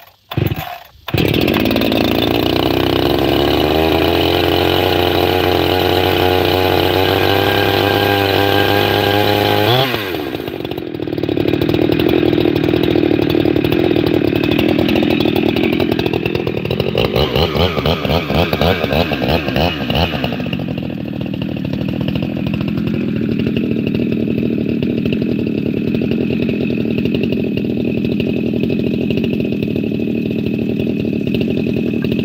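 Husqvarna 390 XP two-stroke chainsaw firing briefly twice, then catching about a second in and running. It holds one steady engine speed for several seconds, changes abruptly around ten seconds in, then runs at a wavering speed before settling to a steady note.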